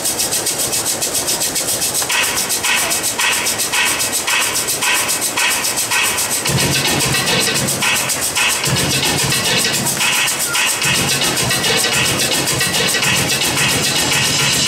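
Dance music with a fast ticking pulse; a repeating higher stab comes in about twice a second after a couple of seconds, and a heavy bass line joins about halfway through.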